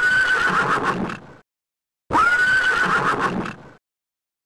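A horse whinnying: the same recorded whinny played twice in a row, each call about a second and a half long, with a short gap between.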